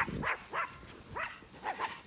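Small dog yapping while herding sheep: about five short, high barks in quick succession.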